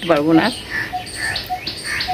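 Small birds chirping in short scattered calls, with a brief snatch of a woman's voice at the very start.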